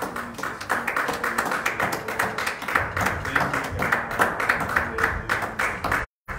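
Hands clapping in praise during a church service: a quick, even run of claps, about four a second.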